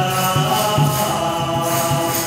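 Group devotional chanting (kirtan) of a Sanskrit mantra, sung over a steady low beat with a high jingle.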